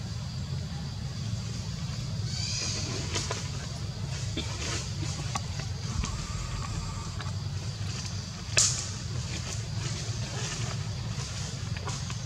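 Steady low rumble of outdoor background noise, with a few short high squeaks about two to three seconds in and a brief, louder high squeak about eight and a half seconds in.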